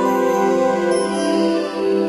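Background music of slow, sustained held notes, shifting to a new chord about a second in.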